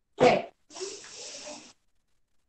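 A short, sharp vocal burst from a person, followed by about a second of breathy exhaling that stops short of the end.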